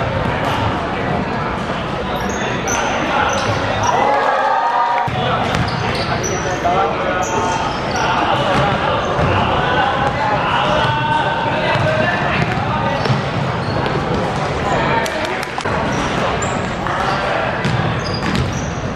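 A basketball being dribbled on a wooden sports-hall court during live play, with sneakers squeaking and players and spectators calling out, all echoing in the large hall.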